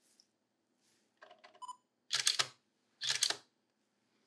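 DSLR camera taking a shot: a few faint clicks and a short beep, then two loud double clacks of the shutter and mirror about a second apart.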